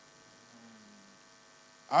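Faint, steady electrical mains hum from the microphone and sound system during a pause in a spoken address, with a man's voice starting again right at the end.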